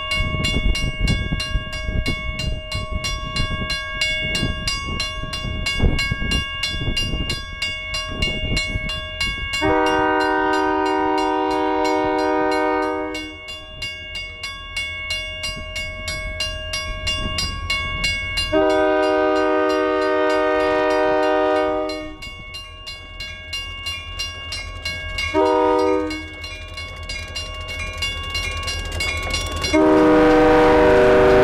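Diesel freight locomotives approaching and sounding a multi-chime air horn in the grade-crossing pattern: two long blasts, a short one, and the final long one starting at the end. Under it run the locomotives' engine and wheel rumble and a bell ringing steadily.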